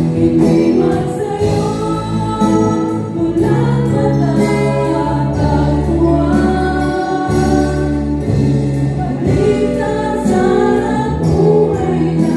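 A live band with several women singing together into microphones, backed by acoustic guitar, electric bass, keyboard and drums. Long held sung notes over a steady bass line and drum beat.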